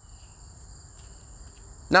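A faint, steady high-pitched trill or whine holding through a pause in talk, over a low background rumble; a man's voice starts again at the very end.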